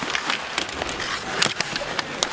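Ice hockey game sound: skates scraping the ice and sticks clacking on the puck and each other, many short sharp clicks over a steady arena crowd haze. The loudest click comes about a second and a half in.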